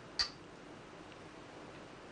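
A go stone placed on the commentary board with a single sharp click shortly after the start.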